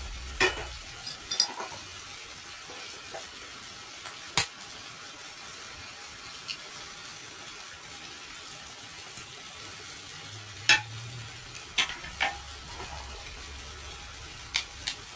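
Tomato sauce sizzling steadily in a frying pan, with a few sharp knocks and clinks as an egg is cracked in and a wooden spatula and eggshell are set in a steel bowl.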